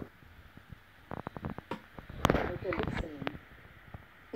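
A quick run of light taps or clicks lasting under a second, then a sharper click followed by a brief wordless voice sound.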